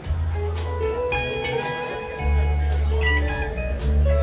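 Live jam-band rock music: a melodic electric guitar line over long held bass notes, with drums and cymbals striking about twice a second.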